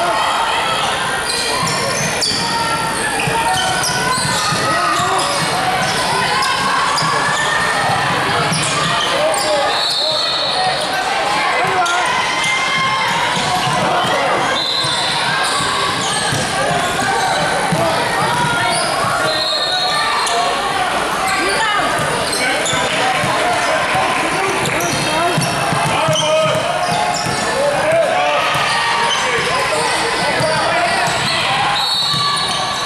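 A basketball being dribbled on a hardwood gym floor during a game, under a steady background of voices from players and spectators echoing in the hall.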